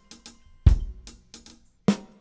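Multi-miked drum kit recording playing back: light hi-hat ticks, a heavy kick drum hit about two-thirds of a second in and a sharp snare hit near the end. This is the unprocessed take, with cell phone interference still bleeding into the drum tracks.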